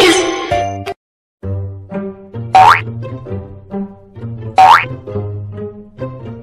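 Bouncy background music for children, with a short noisy burst at the start and a brief dropout about a second in. Two loud rising cartoon 'boing' sound effects come about two seconds apart.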